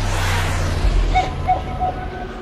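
Jet fly-by sound effect: a rushing whoosh that swells and fades within the first second, over a steady low rumble. A few short, faint tones follow.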